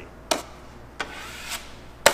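Steel drywall knife scraping and clicking against the edge of a metal mud pan loaded with joint compound: three short, sharp strokes roughly half a second apart.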